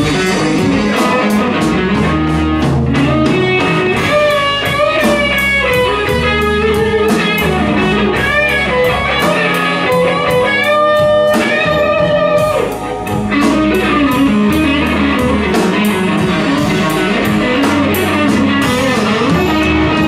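Live blues band playing a slow twelve-bar blues. A lead electric guitar plays bent, sliding notes over drums, bass and keyboards.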